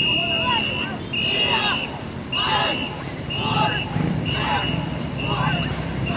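A ngo-boat crew paddling off to a rhythm whistle: a high whistle blast about once a second, quickening slightly, with the paddlers calling out together on each stroke.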